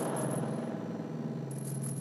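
An electronic backing track cuts in abruptly: a low, sustained synthesizer tone rich in overtones, with rapid high metallic ticking like a hi-hat or shaker over it.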